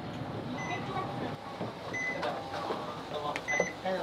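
City bus interior: steady low engine rumble with a few short, high electronic beeps and voices.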